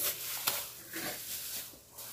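Thin plastic grocery bags and meat packaging rustling and crinkling as groceries are handled, with a small knock about half a second in.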